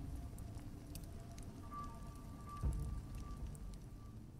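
Quiet, low, droning soundtrack music from an archival documentary film clip, with faint crackles throughout. A single low thump comes about two-thirds of the way through.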